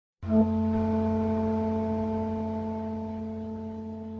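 Electronic keyboard playing one held chord that starts just after the beginning and slowly fades, with a low bass note beneath.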